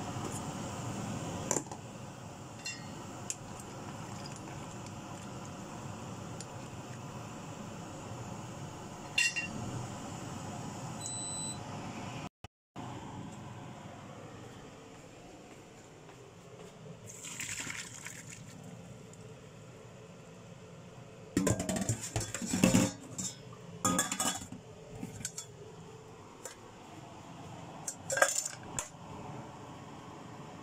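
Kitchen cooking sounds: water being handled in a pot, with pots and utensils clinking and clattering in bursts in the second half.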